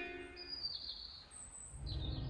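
A few short, high bird chirps, faint against the outdoor background, as music fades out.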